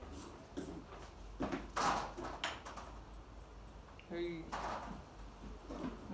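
A vacuum cleaner being handled and set up, with several sharp knocks and clatters of its hose and wand; the motor is not running. A short voiced sound comes about four seconds in.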